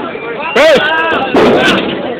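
A man shouts "hey" close to the microphone, with crowd noise around him. About a second and a half in comes a loud, distorted burst, as the mic overloads on shouting or the camera is jostled.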